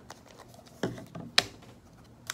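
Plastic screw caps being twisted off small plastic bottles and set down on a table: two light clicks or knocks, one a little under a second in and a sharper one about one and a half seconds in.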